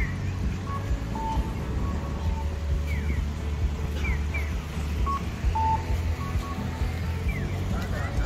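Street ambience at a busy city crosswalk: a steady low traffic rumble with short high chirps recurring every second or two, under quiet background music.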